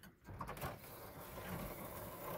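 A faint bird call over a low, steady outdoor background noise.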